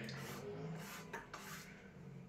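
Faint scraping and a few small clicks of a toy scoop working in a small box of pretend ice cream, over a low steady hum.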